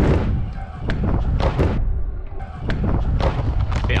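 Stunt scooter rolling and clattering over a wooden ramp, with several sharp knocks from the deck and wheels hitting the boards, under heavy wind buffeting on the rider's camera microphone.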